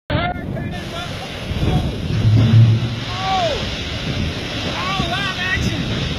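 Strong storm wind from a tornado blowing across the phone microphone, a heavy low rumble that swells about two to three seconds in. A man's voice lets out a few short exclamations over it.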